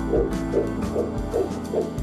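Fetal heartbeat picked up through a smartphone app: quick, even pulses, a few a second, over background music.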